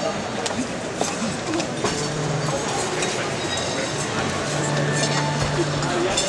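Murmur of many guests talking at once in a banquet hall, with scattered clinks of glassware and tableware and small knocks. A low steady tone sounds briefly about two seconds in and again for over a second near the end.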